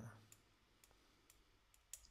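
Near silence broken by a few faint, scattered clicks at a computer, about five across two seconds.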